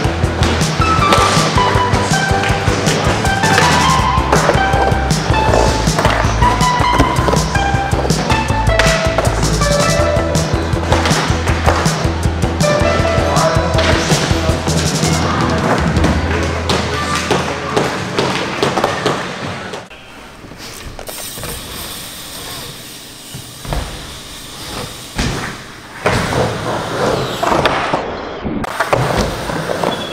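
Music with a steady beat that fades out about two-thirds of the way through. After it, skateboard wheels roll on a wooden mini ramp, with several sharp knocks of the board hitting the ramp.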